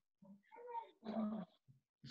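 Two faint, short vocal sounds, one just after the other about a second in.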